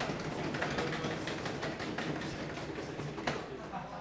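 A class of students drumming their hands on their tables in a drum roll: a dense, steady patter of rapid taps.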